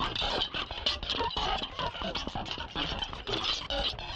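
Electronic music played on a heavily modulated Mimic sampler synth in Reason, built from a prerecorded sound file and sequenced from a MIDI file: a dense, rapid stream of choppy, irregular sampled hits with a bright hissy layer on top.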